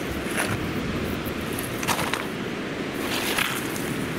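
Steady wind-and-surf noise on a pebble beach, with a few brief crunches and scrapes of beach stones being stepped on or handled, about half a second in, near two seconds and just after three seconds.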